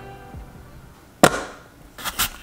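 Background music fading out, then about a second in, one loud chop of a knife cutting through an apple onto a cutting board.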